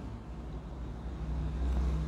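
A low rumble that grows louder toward the end, with a faint steady hum, in a pause between speech.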